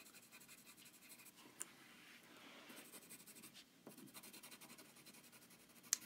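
Pencil shading on paper: faint, uneven scratching strokes, with a small tick about one and a half seconds in.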